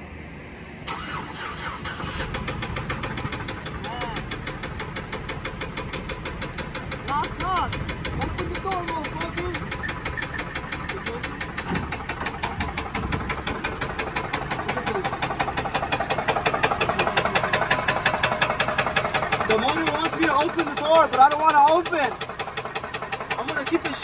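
A Chevrolet Silverado's V6 engine starts about a second in and then runs with a loud, fast, even knocking, the sign of an engine ruined by being driven without oil.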